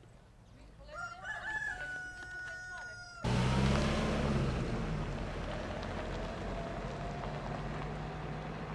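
A rooster crows once, starting about a second in: one long call that rises, holds and drops away at the end. Then the sound cuts abruptly to a louder, steady outdoor noise with a low hum.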